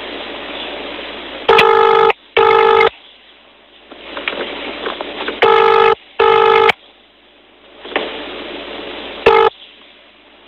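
Telephone ringback tone heard down the phone line: two double rings about four seconds apart, with a third ring cut short as the call is answered near the end. Line hiss fills the gaps between rings.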